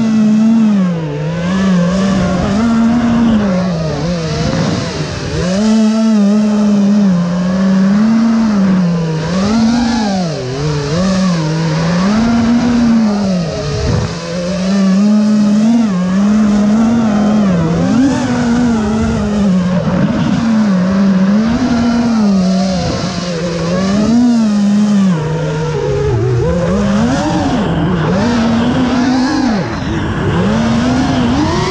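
FPV quadcopter's motors and propellers whining, the pitch repeatedly rising and falling as the throttle is worked.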